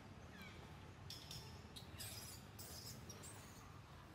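Faint outdoor ambience: a short falling bird chirp just after the start, then two brief spells of high hiss in the middle, over a low steady hum.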